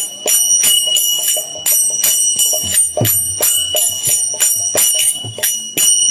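Kartals (small brass hand cymbals) clashing in a steady beat of about three strokes a second, with a lasting high ring, over occasional low drum strokes, in an instrumental break of a kirtan.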